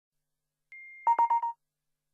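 Short electronic intro sting: a thin high beep held for about three quarters of a second, overlapped by four quick, lower beeps in a fast run, all over by about halfway through.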